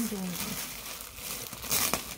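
Plastic garment bag crinkling as it is handled, loudest in a burst near the end. A woman's voice trails off in the first moment.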